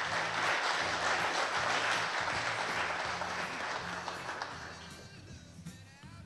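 Audience applauding, loudest at first and dying away over the last couple of seconds, over low, steady background music.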